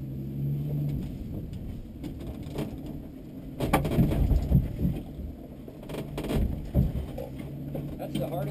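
1960 Willys Station Wagon engine running at low revs as the wagon crawls over slickrock, with two sharp knocks from the vehicle, one a little under four seconds in and one about six seconds in, each followed by a rougher, louder stretch.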